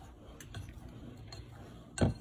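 Metal pastry blender cutting margarine into flour in a glass bowl: a few faint ticks as the blades knock the glass, with a sharper click at the end.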